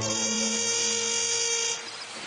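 Film soundtrack: held, steady tones carrying on from the score, with a high-pitched whine laid over them that stops near the end.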